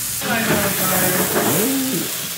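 Chicken livers sizzling hard in a hot stainless skillet as brandy is poured in to deglaze, the hiss rising sharply a moment in as the alcohol hits the pan and catches fire.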